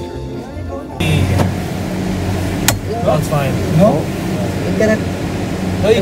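Background music for about a second, then a steady low hum inside a riding passenger cabin, with people talking.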